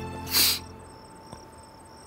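A brief, loud whoosh about a third of a second in, then crickets chirping faintly in short, evenly repeated high trills.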